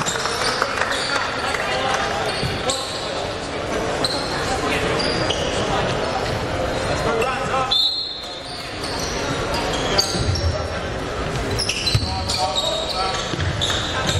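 Basketball hall sound: echoing crowd chatter, a basketball bouncing on the hardwood court, and many short high squeaks of shoes on the floor.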